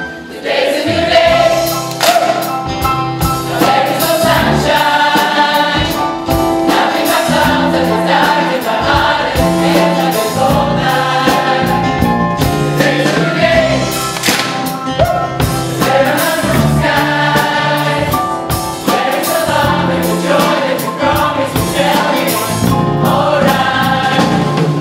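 Large gospel choir singing in full harmony with a live band, including bass guitar, keeping a steady beat.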